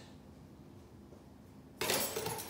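Quiet room tone, then near the end a sudden loud rustle and crinkle of plastic packaging as small boxed parts are handled and pulled out of a cardboard box.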